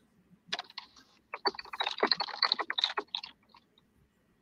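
Typing on a computer keyboard: a quick run of keystrokes that starts about half a second in, comes thickest in the middle and stops a little after three seconds.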